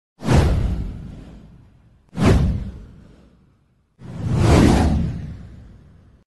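Three whoosh sound effects about two seconds apart, each fading out over a second or two. The first two start suddenly; the third swells in more gradually.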